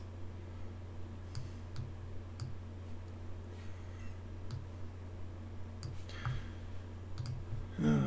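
Scattered single clicks from a computer mouse and keyboard, about a dozen at irregular intervals, over a steady low hum.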